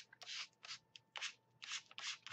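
Foam sponge dragging acrylic paint across paper in short, quick scrubbing strokes, about three a second.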